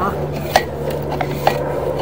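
Sewer inspection camera and push cable being fed down a PVC clean-out line: two sharp clicks about a second apart over a steady low hum.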